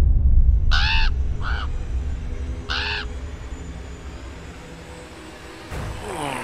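A crow cawing three times in the first three seconds, over a deep rumble that starts suddenly and slowly fades.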